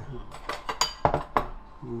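Stainless steel ladle clinking against a metal pot while stew is ladled out: about four sharp clinks.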